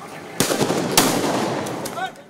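Two sharp gunshots about half a second apart, each leaving a long noisy tail, then a few fainter cracks near the end, from police firearms fired in a street.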